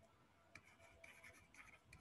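Faint scratching of a stylus writing, in short strokes from about half a second in, against near silence.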